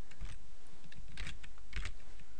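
Computer keyboard being typed on: a handful of separate keystrokes, most of them in the second half.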